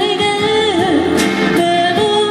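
A woman singing a pop song into a microphone, accompanied by a semi-hollow electric guitar, played live through a PA. One held note wavers with vibrato about halfway through.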